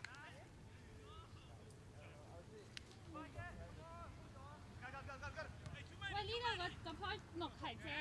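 Distant shouts and calls from soccer players on the field. Several voices overlap, sparse at first and busier in the second half, with one sharp knock about three seconds in.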